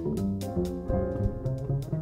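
Live jazz with an upright double bass played by hand out front, backed by keyboard chords and scattered drum and cymbal hits.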